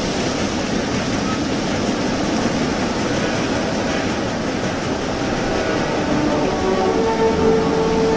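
Steady rumbling noise of a large vehicle running, part of a cartoon's soundtrack. A few held music tones creep in near the end.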